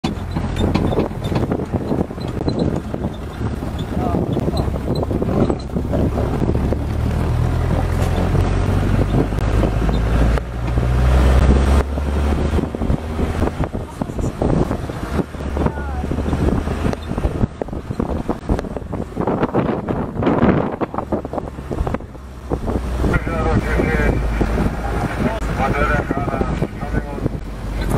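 Low, steady rumble of a vehicle engine running, with people talking indistinctly over it. The voices are clearest near the end.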